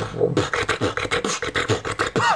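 Human beatboxing: a bassline-heavy pattern of rapid, evenly spaced mouth strokes, about six or seven a second, over a buzzing vocal bass.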